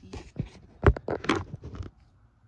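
A quick run of rustles and knocks, loudest about a second in.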